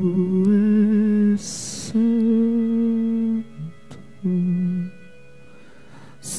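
A man humming long, held notes into a close microphone, with a slight waver in pitch, in three phrases. A loud, hissy in-breath about a second and a half in, and a short click near the two-thirds mark.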